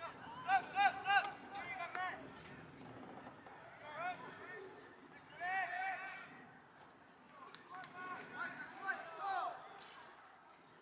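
Distant voices shouting and calling out across an open soccer field, in several bursts: a cluster of loud calls in the first two seconds, more around five to six seconds and again near the end.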